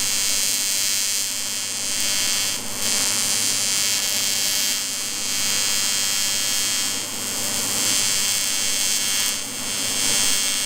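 AC TIG welding arc from a Lincoln Square Wave TIG 200 on aluminum, a steady electric buzz with a hiss over it, as a bead is run on a crack in a boat hull. The buzz dips briefly a few times.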